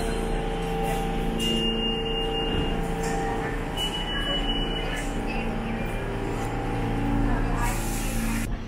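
New York City subway train standing at a station platform: a steady hum of several tones, with two short high whines in the first half and a brief hiss near the end.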